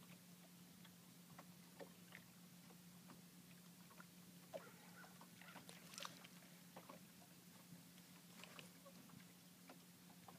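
Near silence: faint scattered clicks and rustles from a crappie being worked out of a landing net by hand, over a steady low hum. The clicks bunch up about halfway through.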